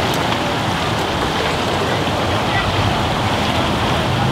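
Steady, even splashing of swimmers doing laps in a pool, with faint voices in the background.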